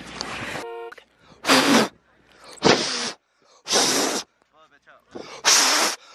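Four short puffs of breath blown right against the camera's microphone, about a second apart, to clear ice from the lens.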